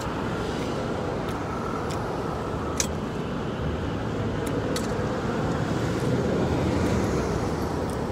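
City street traffic noise, a steady rumble and hiss of passing cars that swells slightly past the middle, with a few light clicks.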